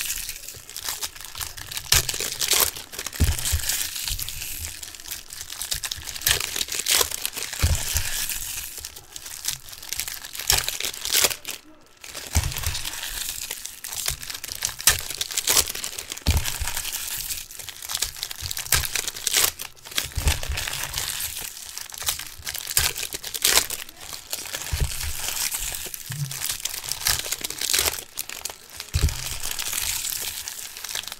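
Foil trading-card pack wrappers being torn open and crinkled by hand, an irregular crackling rustle with a short lull about twelve seconds in, with soft knocks as cards are set down on stacks.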